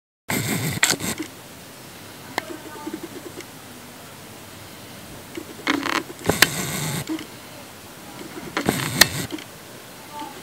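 Steady background hiss that cuts in abruptly just after the start, broken by three brief bursts of rustling noise with sharp clicks: about a second in, around six seconds, and near nine seconds.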